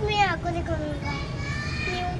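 A young boy's voice speaking in short phrases, high-pitched, over a steady low hum.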